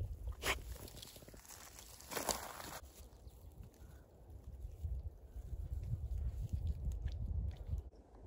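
A dog tearing and chewing grass close to the microphone: a short crunch about half a second in and a longer crackly crunch around two seconds in. A low rumble runs under it and grows louder in the second half.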